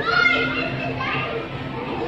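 Background chatter of children's voices in a busy public hall, with one child's high voice standing out near the start.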